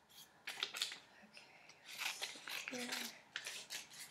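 Scissors cutting construction paper: several short, irregular snips as paper pieces are trimmed down to size.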